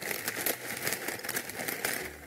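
Plastic packet of brown rice noodles crinkling as it is handled, a quick irregular run of small crackles.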